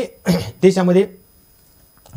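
A man clearing his throat and making a few short voiced sounds in the first second, then a pause.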